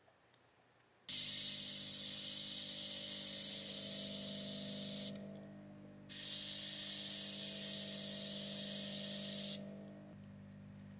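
Compressed air blasting through a GAAHLERI GHAC-98D airbrush in two long bursts of hiss, about four seconds and three and a half seconds long, each starting and cutting off sharply with a second's gap between. A steady low hum runs underneath from the first burst on and keeps going after the air stops.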